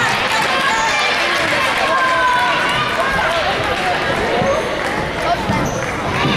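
Crowd chatter in a gymnasium: many spectators' voices talking at once, steady throughout.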